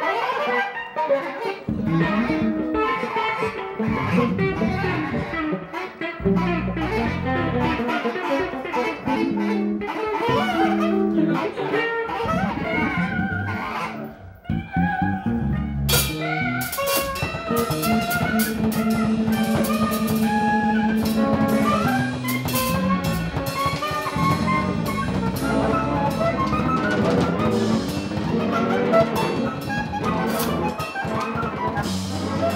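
Live free-improvised jazz from a quartet of electric guitar, bass, drum kit and bass clarinet. Midway the playing thins to a brief lull, then the drums crash back in and the full band plays loudly, with a long held low note.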